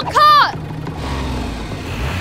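A short, loud cartoon-character cry that rises and falls in pitch, followed by a steady low vehicle engine sound.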